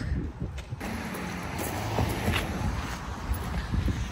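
Steady outdoor noise of wind on the microphone mixed with passing road traffic, thickening about a second in.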